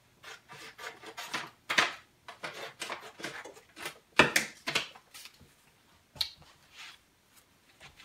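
Scissors snipping paper and paper sheets being handled: irregular crisp snips and rustles, loudest a little before two seconds and just after four seconds in.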